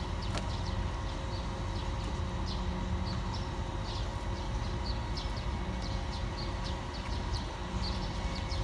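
Steady outdoor background at a waterside pier: a low rumble with a faint constant hum, and frequent short high chirps, two or three a second, with an occasional click.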